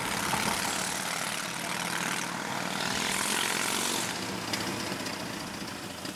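Harley-Davidson Sportster Forty-Eight's air-cooled 1200 cc V-twin running in traffic alongside, heard from inside a moving car over the car's own road noise. The bike is too loud, a sign of a modified exhaust. The noise is steady, a little louder in the first few seconds and easing near the end.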